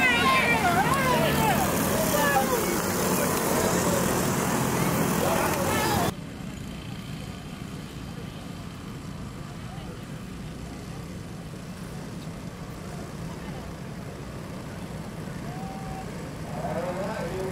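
Dirt-track go-kart engines running, loud with a voice over them for about six seconds. The sound then cuts off abruptly to a quieter, steady distant drone of the kart field.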